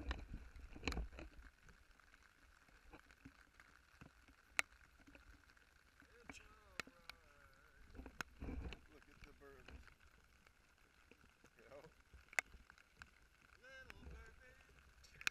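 Mostly quiet, broken by scattered single sharp clicks and knocks, two low thumps about a second in and about eight and a half seconds in, and faint voices in the background.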